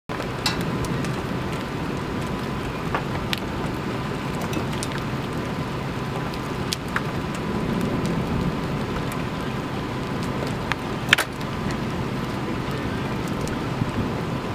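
Steady thunderstorm rain and wind noise, with scattered sharp ticks of hailstones striking nearby; the loudest strike comes about eleven seconds in.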